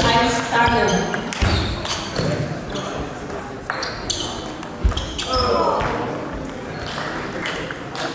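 Table tennis ball clicking off the bats and table during a rally in a large sports hall. A voice calls out near the start and again about five seconds in.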